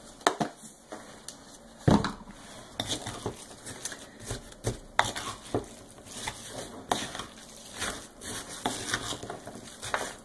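Wooden spoon stirring a coarse filling of chopped walnuts, raisins and dark brown sugar in a glass bowl: irregular scraping and knocks of the spoon against the bowl, about one or two a second, the loudest about two seconds in.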